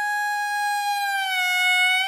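Hichiriki, the Japanese double-reed bamboo pipe, holding one long steady note that dips slightly in pitch in the second half.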